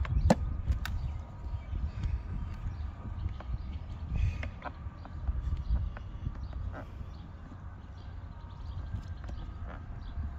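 Scattered clicks and knocks of hands working on a hard plastic tool box lid, pressing a small round LED marker light into its drilled hole, with a sharper click just after the start. Under it runs a low rumble of wind on the microphone.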